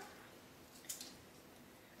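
Near silence, with one faint short snip about a second in: scissors cutting through damp sphagnum moss.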